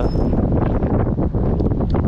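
Wind buffeting the camera microphone: a loud, unsteady low rumble throughout.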